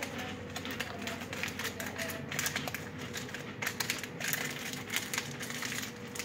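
Close-up chewing of a crisp, sweet cracker: a run of irregular sharp crunches and crackles.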